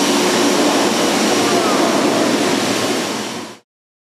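200-ton electric arc furnace running with its arc lit: a loud, steady, dense roaring noise with no clear pitch. It cuts off suddenly near the end.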